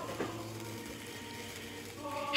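Faint, steady fizzing of lit handheld wire sparklers, with a soft tick about a quarter second in.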